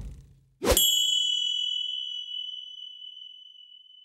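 A single bright metallic ding, a logo-sting chime sound effect, struck once just under a second in and left ringing. Its high, steady tone fades slowly.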